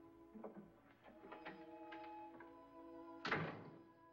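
Orchestral film score holding sustained tones, with a few light knocks in the first two seconds and one louder single thump a little after three seconds in.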